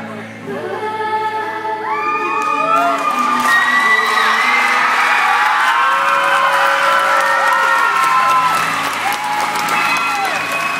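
Recorded music playing through the hall's sound system while a large crowd of students cheers and shouts over it; the cheering builds about two seconds in and stays loud.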